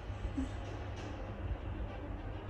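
Steady low rumble of room background noise, with a brief faint vocal sound about half a second in.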